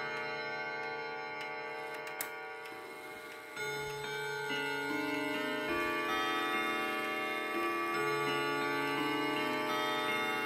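Hermle triple-chime wall clock's hammers striking its chimes, with the movement ticking. The notes of one phrase ring on and fade over the first few seconds, with a short click about two seconds in. A fresh run of notes then starts about three and a half seconds in, a new note every half second to a second.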